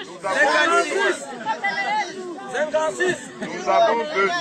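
Speech: a man's voice addressing a crowd, with background chatter.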